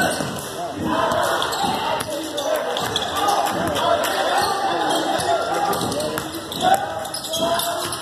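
Basketball dribbling on a hardwood gym floor during live play, the bounces set against steady spectator and bench voices.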